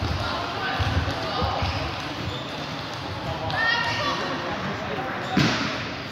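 Table tennis balls clicking off tables and bats at many tables across a large, echoing tournament hall, over a hubbub of voices. A louder sharp knock comes near the end.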